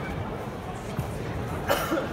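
Steady murmur of a busy sports hall, with one short cough near the end.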